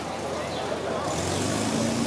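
Crowd chatter along a busy street, with a motor vehicle's engine and a hiss growing louder in the second half, ending on a steady hum.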